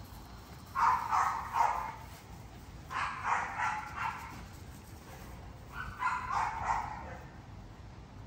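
American bully dogs barking and yelping during rough play-fighting, in three short flurries of quick calls: about a second in, around three seconds, and around six seconds.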